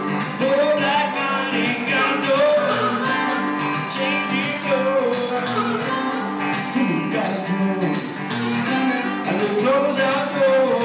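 Live blues: a guitar plays steady accompaniment under a wavering melody line that bends up and down in pitch.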